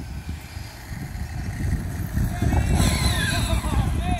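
Brushless electric motor of a radio-controlled monster truck whining, its pitch gliding up and down as it speeds up and slows, starting about two seconds in, over a steady low rumble.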